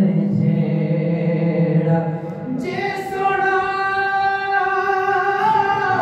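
A man singing a Saraiki kalam unaccompanied into a microphone, drawing out long held notes. About two and a half seconds in he moves from a low held note up to a higher one.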